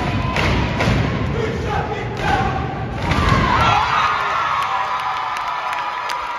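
A step team stomping and jumping in unison on a stage, a few heavy thuds in the first three seconds, then the audience cheering and shouting from about three seconds in.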